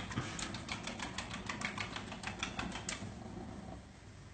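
Eggs being beaten with a fork in a ceramic plate: quick light clinking taps, about five or six a second, stopping about three seconds in.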